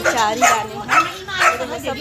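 A dog barking about three times, each bark about half a second apart, among people's voices.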